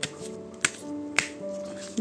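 Soft background music with long held notes, with two sharp taps about half a second apart near the middle as a hand handles a tarot deck on the table.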